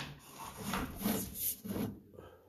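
Sewer inspection camera head and push cable scraping along the inside of a drain pipe as they are pushed down the line, a series of rough rubbing scrapes about two a second.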